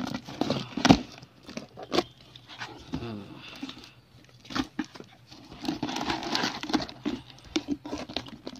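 A taped cardboard parcel being torn open by hand: packing tape ripping and paper and plastic crinkling, with one sharp crack about a second in and a louder stretch of rustling near the end.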